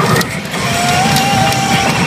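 Hana no Keiji pachinko machine playing its reach-animation music and sound effects, with a long held note coming in about half a second in, over a continuous mechanical clatter from the machine.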